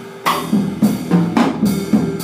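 Live jazz: a drum kit plays a run of about six snare and cymbal hits, starting just after a brief lull, over held low notes.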